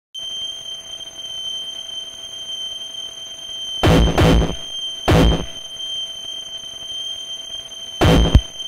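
Opening of a power electronics noise track: a steady hiss carrying several thin, high, steady whines. Three short blasts of harsh, distorted full-range noise cut in, two close together about four seconds in and one about a second later.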